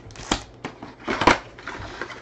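Foil-wrapped trading-card packs crinkling and rustling as they are handled and pulled out of an opened box, in two short bursts, the second, a little past a second in, the louder.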